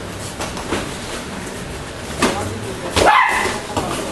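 Taekwondo sparring: a sharp smack about two seconds in, then a short, high yelp-like shout with a rising and falling pitch about three seconds in, the loudest sound here.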